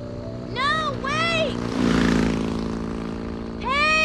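Film soundtrack: an engine running steadily, swelling louder about two seconds in. A woman gives short, high-pitched cries, twice close together early on and once near the end.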